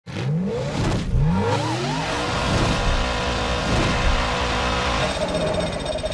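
Race car engines revving in a highlights intro sting. There are repeated rising pitch sweeps and a few rise-and-fall passes in the first two seconds, then a steady engine drone with a brighter change near the end.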